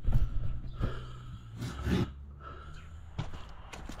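A man breathing out heavily, with a few light knocks and rustles from the camera being handled.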